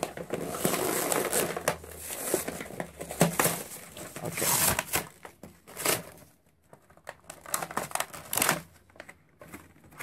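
Packaging of a boxed toy train being pulled and torn open by hand: irregular crinkling, tearing and clicking, busiest in the first few seconds, then in a few separate louder bursts.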